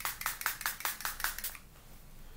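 Rapid run of short spritzes from a pump-spray bottle of face mist (Ciaté London Everyday Vacay), several a second, misted onto the face; they stop about a second and a half in.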